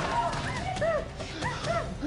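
A series of short, high, wavering whimpering cries, several a second, over background music.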